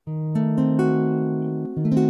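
Acoustic guitar chord fingerpicked, its notes rolled in one after another over the first second and left ringing. Near the end the chord is struck again with some notes changing.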